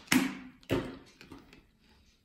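Two short, sharp sounds about half a second apart, followed by faint handling noises, as a soft chocolate-coated sweet is cut in two.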